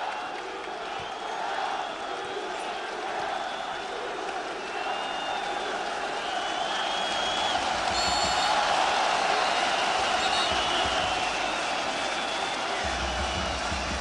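Football stadium crowd: a continuous din of many voices with a few long, high whistles a third of the way in, swelling slightly after the middle.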